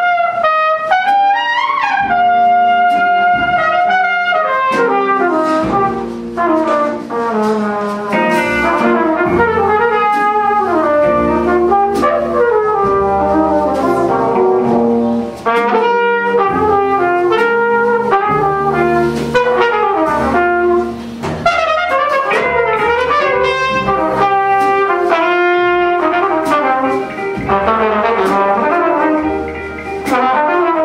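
A trumpet plays a moving melody line over a live jazz combo of archtop electric guitar, upright bass and drum kit with cymbals.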